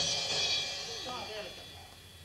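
A single cymbal crash on a drum kit, struck once and ringing out, fading over about a second and a half. Children's voices are heard briefly about a second in.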